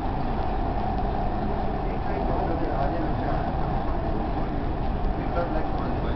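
Steady rolling rumble inside a moving Dubai Metro train car, with indistinct passenger voices.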